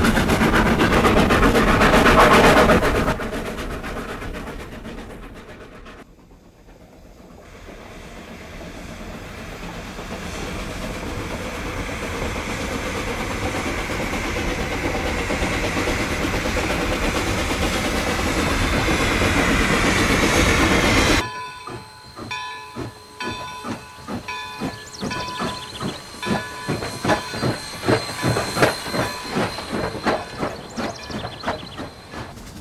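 A railroad train running: the sound is loud at first, fades away, then builds steadily again as a train draws near and passes. About 21 s in it cuts to a quieter stretch of quick, regular beats from the train.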